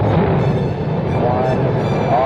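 Rocket-launch recording: the rocket's engines rumble at ignition and liftoff, with music playing under it.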